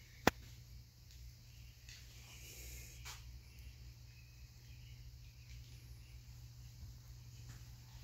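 Quiet, steady low hum, with one sharp click shortly after the start and a fainter tick about three seconds in.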